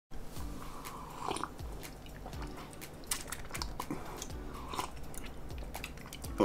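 Close-up mouth sounds of sipping from a mug and swallowing, with many small wet clicks.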